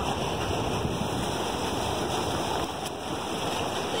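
Steady splashing and rushing of water in a concrete trout raceway, as a crowd of feeding trout churns the surface.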